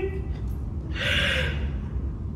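A woman's short, sharp audible breath, like a gasp, about a second in, over a steady low room hum.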